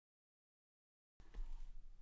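Near silence: dead silence for just over a second, then faint room noise with a low hum.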